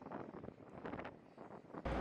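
Faint wind noise on the microphone in short gusts, with a steady low rumble cutting in just before the end.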